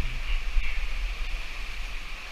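Water rushing steadily down a small rock cascade into a pool in a narrow gorge, an even rush with a deep rumble underneath.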